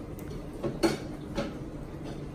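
A few light clicks and knocks, the loudest a little under a second in, from the floating plastic fish bag being handled at the aquarium's surface.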